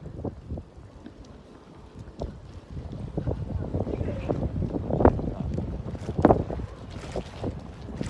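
Wind buffeting a handheld phone's microphone while walking along a street, a low rumble that grows stronger about three seconds in, with short knocks throughout and two louder thumps near the middle.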